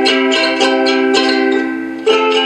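Soprano ukulele strummed steadily on one held chord, about four strokes a second, played through a small amplifier from a homemade passive piezo pickup with its tone knob turned down, so it sounds less electric.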